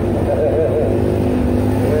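Steady low rumble of a moving road vehicle's engine and road noise, under a man's voice making short rising-and-falling sounds and then a held hum.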